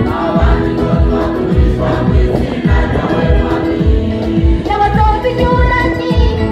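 Choir singing a gospel song in harmony over a steady beat of about two strokes a second.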